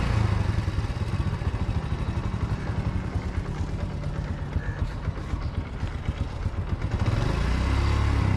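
Motorcycle engine running at low speed as the bike rolls slowly along, its exhaust pulsing steadily and getting a little louder near the end.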